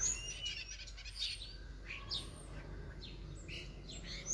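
Birds chirping intermittently: scattered short, high calls.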